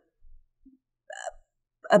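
A short catch of breath in a woman's throat, a little past the middle of a near-quiet pause between spoken phrases.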